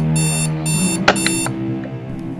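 Electronic alarm clock beeping, short high-pitched beeps about twice a second that stop about a second and a half in, with a sharp click just before they stop. A low sustained music note runs underneath.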